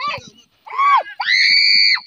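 Loud, excited yelling by a person close to the microphone: a short shout, then a long high-pitched scream from just past a second in that holds steady and cuts off at the end.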